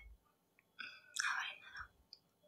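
A brief, faint whispered murmur of a woman's voice about a second in, with a few soft low thumps and clicks around it.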